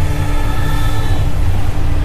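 A deep, steady rumble with held tones laid over it, fading after about a second: the dramatic score and magic sound effects of a fantasy drama.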